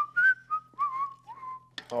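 A person whistling a short tune of several notes that step up and down, with a few faint clicks.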